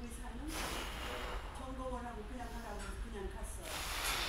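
A woman breathing hard through her mouth while straining through tricep press reps: two hissing breaths out, about three seconds apart, with low strained voice sounds between them.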